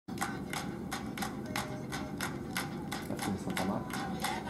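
Rhythmic samba percussion from a recording played on a laptop: sharp strikes about three times a second.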